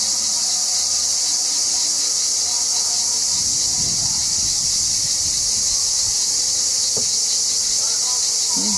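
Dense, steady high chorus of cicadas shrilling without a break.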